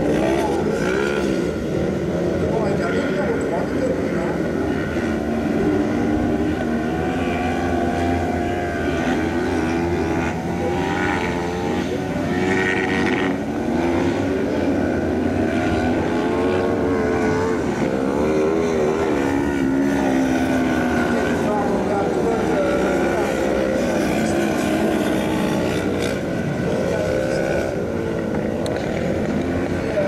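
Several 500 cc kart cross buggies racing, their motorcycle engines revving up and down and overlapping one another.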